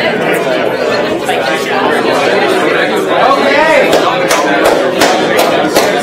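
Indistinct hubbub of many people chatting at once in a lecture hall, overlapping voices with no single speaker standing out. A few sharp clicks come near the end.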